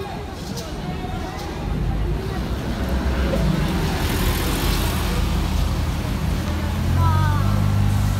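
White Ferrari California's V8 running and building as the car pulls away, a low, steady drone that is loudest near the end. A hiss rises about halfway through.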